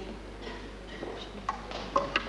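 Heeled shoes tapping on a wooden stage floor: a few sharp steps in the second half, over faint room tone in a large hall.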